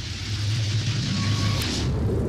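Logo-intro sound effect: a rushing, swelling whoosh over a steady low hum that builds and then cuts off near the end.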